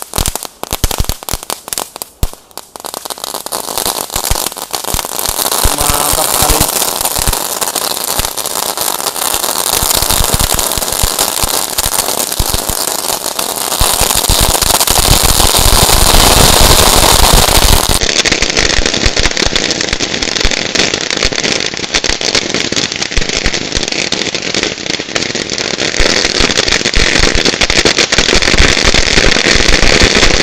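Ground fireworks burning: fountains and crackling 'dino egg' fireworks. Sharp crackling pops in the first few seconds give way to a loud, steady hissing spray of sparks thick with fast crackle, which builds over several seconds and keeps going.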